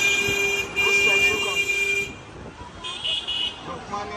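A vehicle horn held in one long, steady blast in street traffic, broken briefly under a second in and cutting off about two seconds in.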